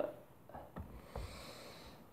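Faint handling of avocados: a few light knocks and rustles as the cut halves are set down and a whole avocado is picked up.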